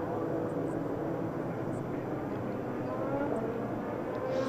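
IndyCar race engines, 2.2-litre twin-turbo V6s, in a steady drone from the field of cars on track, with a few rising pitch glides as cars accelerate.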